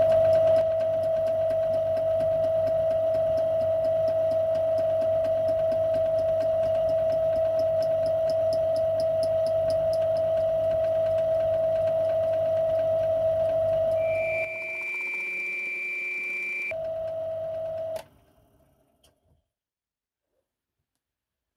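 Small metal lathe running with a steady whine and hum while a turning tool takes very light, intermittent cuts on the rim of a spinning copper disc. Near the end a higher whine is heard briefly, then the lathe sound stops suddenly.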